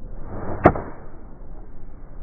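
A long iron swishing through the downswing, then one sharp crack as the clubface strikes the golf ball, about two-thirds of a second in.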